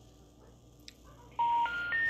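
Three rising special information tones from a cordless phone on speakerphone, starting about a second and a half in after a quiet open line. They are the telephone network's intercept signal that the dialed number is disconnected or no longer in service.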